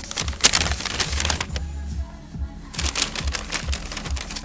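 Paper bags and foil-wrapped fast-food burgers rustling and crinkling as they are handled and set down on a table, a run of quick crackles and clicks that eases off briefly around the middle.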